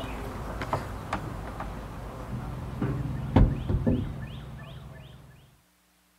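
Outdoor ambience with a steady low hum and a few scattered knocks, the loudest about halfway through, joined by a string of short falling chirps in the second half, then fading out to silence near the end.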